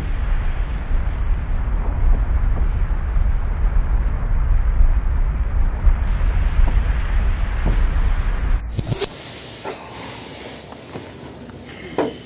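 A loud, deep, steady rumble with a hiss over it, which cuts off suddenly after a sharp click about nine seconds in, leaving quiet room tone.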